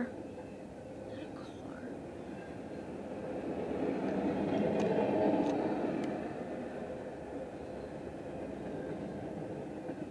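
Freight train of double-stack intermodal well cars rolling past, a steady rumble of wheels on rail that swells to its loudest about halfway through, with a few light clicks, then eases off.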